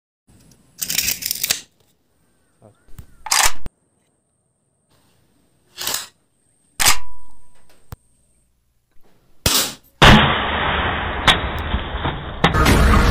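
Homemade bamboo toy rifle handled and fired: about five separate short sharp cracks and clacks with silence between them. Near the end comes a louder, steady noisy rush lasting about two seconds.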